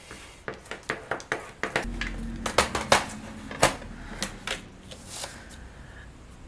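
Folded cardstock being handled and pressed, and craft tools picked up and set down on a glass mat: a run of light taps, clicks and paper rustles, with a faint low hum joining about two seconds in.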